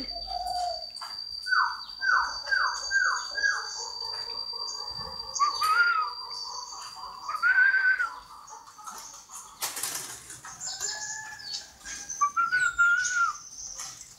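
Caged birds calling in a dove aviary: a low note at the start, a quick run of five falling whistled notes about two seconds in, then scattered short warbled chirps, with a brief rustle just before ten seconds. A steady high whine runs under the first eight seconds or so.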